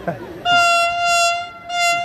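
Electric locomotive's horn sounding at one steady pitch: a long blast of about a second, then a short second blast near the end.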